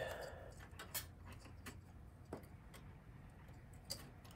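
A few faint, sharp clicks and light rattles of plastic 4-pin drive power connectors and their cables being handled inside an open computer case.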